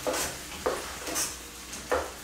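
Spatula stirring and scraping vegetables in a stainless steel frying pan while sautéing, about four short strokes, over a faint sizzle.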